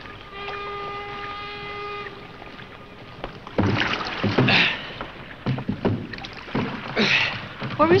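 Oars of a rowing boat dipping and splashing in the water, with knocks, a stroke roughly every two and a half seconds, starting about three and a half seconds in. Before that, a steady pitched tone holds for about two seconds.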